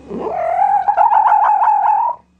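A wild canid's long whining call: it rises in pitch over the first half-second, then holds high, with a fast warble through its second half.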